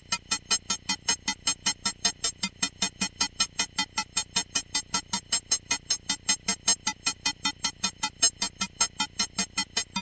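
Electronic cockpit warning tone: a loud, high-pitched beep repeating rapidly, about five times a second, without a break.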